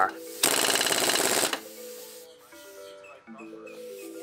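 Impact wrench rattling for about a second on a race car's centre-lock wheel nut, then stopping. Soft background music with held notes follows.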